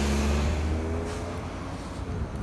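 A motor vehicle accelerating past on the street, its engine note rising over the first second or so, then fading.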